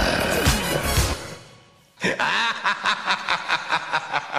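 Music with a steady beat fades out over the first second and a half. About two seconds in, a theatrical villain's laugh starts: a long run of rapid 'ha-ha' pulses, from the song's recorded soundtrack.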